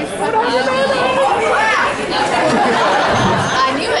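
Audience chatter: several voices talking and calling out over one another in the crowd, close by.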